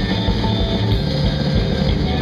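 Live rock band of electric guitar, electric bass and drum kit playing loudly.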